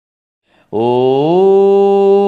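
A man's voice begins a chanted invocation with one long held note, starting about two-thirds of a second in, rising slightly in pitch and then held steady.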